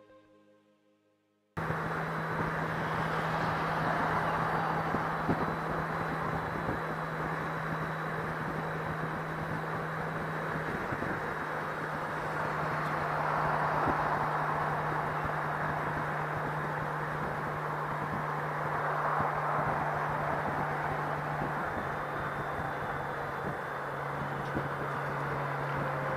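Motorcycle riding at highway speed: steady wind rush over the microphone with a low engine drone underneath, cutting in suddenly about a second and a half in. The drone's pitch drops slightly about 11 seconds in and again near the end.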